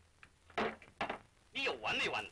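Speech only: a few short spoken phrases of dialogue.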